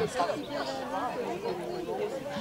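Several people talking at once: crowd chatter with overlapping voices.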